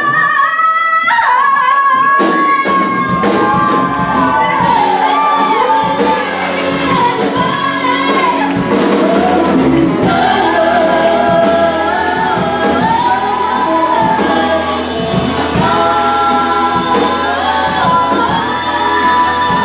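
Live rock band with several female singers singing together over drums and electric guitar. For about the first two seconds only the voices are held, then the full band comes back in.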